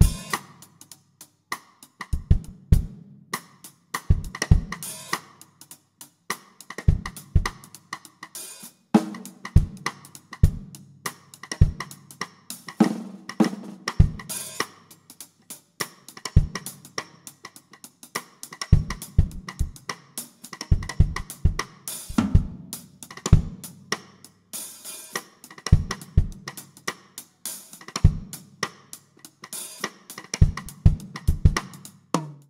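Drum kit played solo, with no other instruments heard: bass drum strokes in quick clusters of two or three under snare, hi-hat and cymbal hits, in a busy, uneven pattern.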